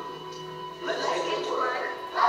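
Soundtrack of a projected video played over a hall's speakers: steady background music, with a voice coming in about halfway through.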